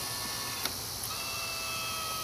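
Small electric motor of a remote pan-and-tilt camera mount, driven from the hat switch on the control stick: a click about two-thirds of a second in, then a steady high whine from just after a second.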